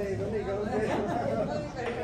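Indistinct chatter of people talking in a restaurant dining room.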